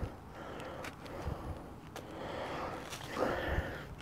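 Gloved fingers scraping and crumbling soil off a clod of earth to free a buried coin: faint rustling and crumbling with a few small ticks, a little louder near the end.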